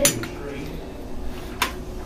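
Light plastic clicks and clatter of a toy dart shotgun and its shells being handled during a reload, with a sharp click about a second and a half in.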